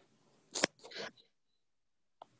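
A few short handling noises: a faint click, then a sharp crackle about half a second in and a couple of softer rustles around a second in.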